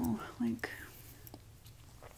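A woman's short murmured vocal sound in the first half-second, then quiet with a few faint, soft clicks.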